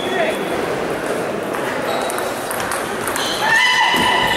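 Busy table tennis hall: a steady din of voices with scattered light clicks of celluloid balls on tables and paddles. About three seconds in, a sustained ringing tone with several pitches at once begins and becomes the loudest sound.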